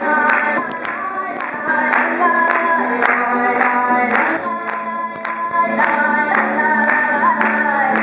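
A live acoustic folk song: voices singing a melody over two acoustic guitars strummed in a steady rhythm.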